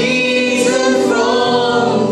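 Live male and female duet singing a worship song into microphones, holding long notes.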